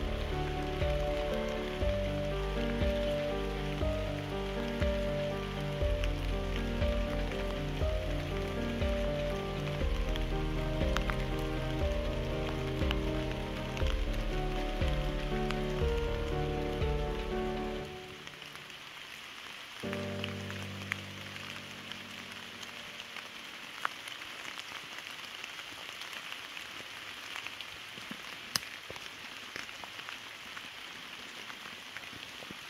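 Steady rain with scattered ticks of single drops, under slow background music of held, stepped notes. The music stops a little past halfway, a last chord sounds briefly and fades, and then only the rain is left.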